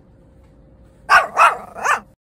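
A dog barking three times in quick succession, starting about a second in, after a quiet start.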